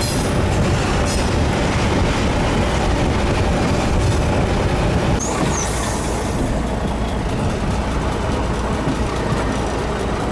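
Croatian motor train heard on board, running through a station yard: a steady rumble of wheels on the track, with a brief high squeal about five seconds in, after which the running noise is a little quieter.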